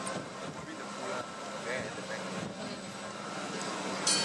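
Steady low machinery drone with faint voices in the background.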